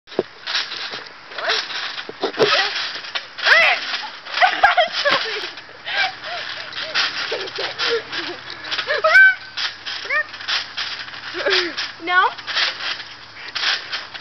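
Trampoline mat taking repeated bounces, a thump about every half second, with girls' voices calling out and laughing over it.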